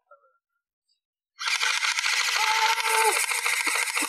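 Airsoft electric rifle firing a sustained full-auto burst: a fast, even rattle of shots that starts abruptly about a second and a half in.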